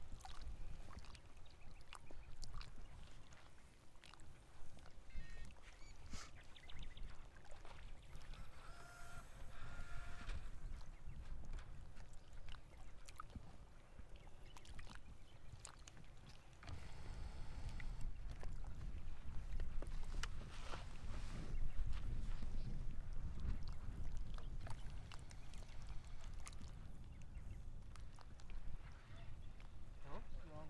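Wind buffeting the microphone: an uneven low rumble that grows louder a little past halfway through, over faint open-air background.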